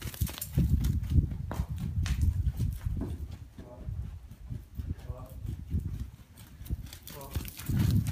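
Muffled hoofbeats of a pony trotting on soft arena sand, a dull uneven thudding.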